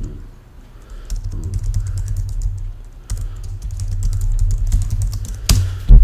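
Typing on a computer keyboard: a quick, uneven run of key clicks, with one sharply louder keystroke near the end.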